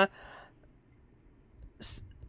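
A woman's soft breath out trailing off after her speech, then a pause of near quiet, then a short breath sound near the end as she gets ready to speak again.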